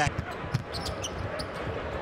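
Basketball arena ambience: a steady crowd hubbub with several short, sharp knocks from the court, such as the ball bouncing on the hardwood.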